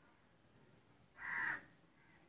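A bird calls once, a single short call lasting under half a second, about a second in.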